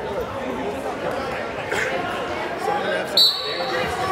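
Murmur of crowd voices in a gymnasium, with one short, loud blast of a referee's whistle a little after three seconds in.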